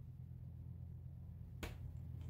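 A single short, sharp click from a hand handling a cardboard hexagonal card, about one and a half seconds in, over a faint low steady hum.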